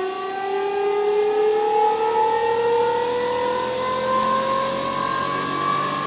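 Motor-driven rotor of a homemade regenerative-acceleration generator spinning up to speed: a steady, multi-toned whine that rises slowly in pitch as the rotor accelerates.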